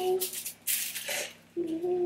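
Paper packet of cake mix rustled and shaken over a mixing bowl, in short bursts about half a second to a second in. A little later a voice hums a low steady note.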